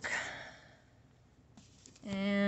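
A woman's breathy sigh, fading out within about the first second, then near silence.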